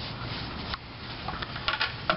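Plastic water-cooler top being handled: a single light click, then a quick run of small plastic clicks and knocks near the end.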